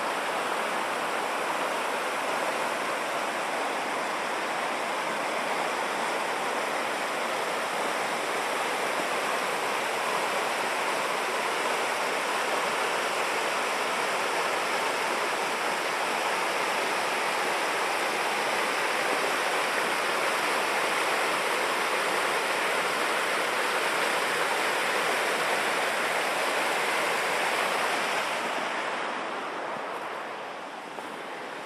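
Mountain stream rushing over rocks, a steady even rush of water that fades down near the end.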